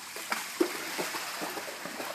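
A dog bounding through shallow pool water, its legs splashing in quick repeated strokes about three or four a second.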